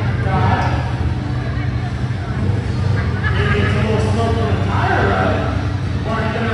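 1999 Dodge Durango's engine revving up and down as it drives the dirt course, the engine note sweeping in pitch with a climbing rev near the end.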